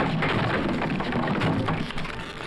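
A dense, steady crackling hiss, like heavy rain, that thins out near the end.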